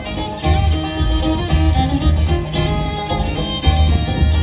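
Live bluegrass band playing an instrumental break: fiddle, banjo and acoustic guitar over an upright bass pulsing on the beat.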